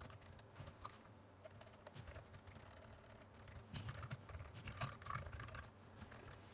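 Faint typing on a computer keyboard: scattered keystrokes, then a quicker run of them about two-thirds of the way through.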